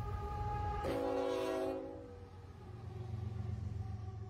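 Nathan K5HL five-chime air horn on a CN GE ES44AC freight locomotive sounding as the lead unit passes close by. Its chord drops in pitch about a second in and cuts off before the halfway point, leaving the low rumble of the intermodal train rolling past.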